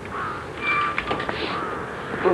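Countryside ambience with birds calling, including a couple of short high-pitched calls near the middle, over a steady outdoor hiss.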